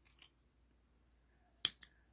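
Small metal thread snips clicking shut: two faint snips at the start, then two sharper ones in quick succession near the end.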